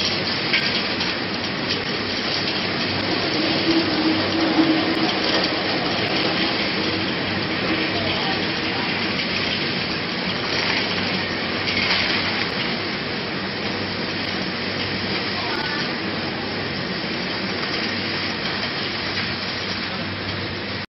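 Peanuts tumbling in a rotating stainless steel drum and pouring out of its mouth into a steel bowl: a steady, even rushing rattle.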